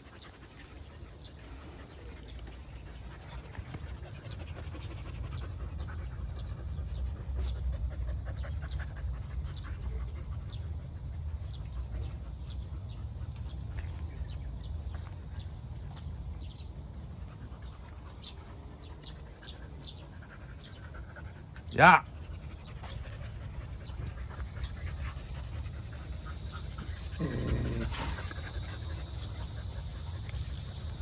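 Jindo dogs and a puppy milling about together, with scattered light ticks over a steady low rumble. About two-thirds of the way through comes a single short, sharp dog yelp that rises steeply in pitch, by far the loudest sound, and near the end a brief, lower dog vocalisation.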